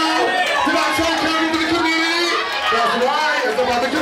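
A voice over a microphone and PA calling out in drawn-out, sing-song phrases, one note held for over a second, over steady crowd chatter.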